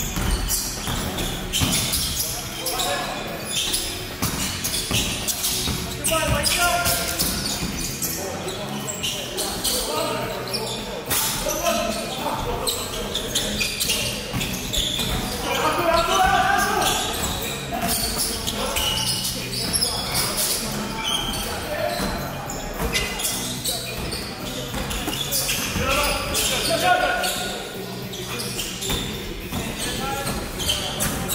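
A basketball bouncing repeatedly on a hardwood gym floor during play, echoing in a large sports hall.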